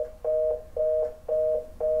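Telephone fast busy tone from a cell phone after the caller hangs up: short two-note beeps repeating about twice a second, the sign that the line has gone dead.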